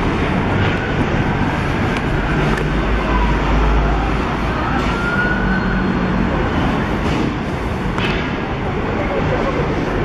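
Busy city street traffic: buses, cabs and cars running past, with a deeper rumble from a heavy vehicle going by about three to four seconds in. A faint siren rises and falls underneath.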